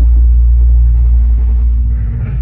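Live band through a loud stage PA holding a low bass note, a steady deep rumble, with a single higher held tone coming in about halfway through.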